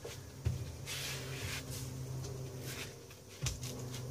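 Soft thumps of hands and knees on a freshly laid plywood subfloor, one about half a second in and one near the end, over a steady low hum.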